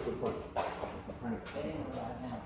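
Faint, distant voices of two people in a scuffle, with a light knock about half a second in and another near the end.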